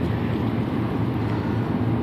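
Steady road and engine noise heard inside a car's cabin while driving at freeway speed, with a constant low hum underneath.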